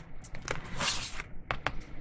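Tarot cards being handled on a cloth-covered table: soft sliding rustles and a few light clicks as cards are moved and laid down.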